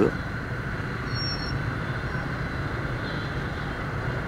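Steady low rumble of dense motorbike traffic crawling in a jam, many scooter engines running at low speed close around.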